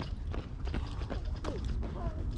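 A jogger's running footsteps passing close by: a row of sharp steps about three a second.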